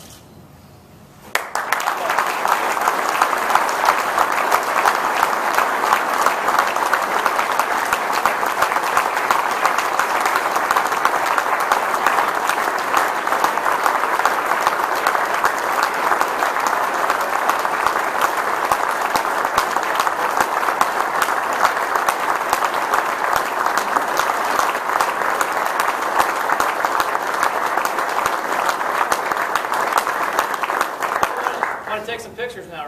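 Audience applause, many people clapping, breaking out suddenly about a second and a half in and going on steadily.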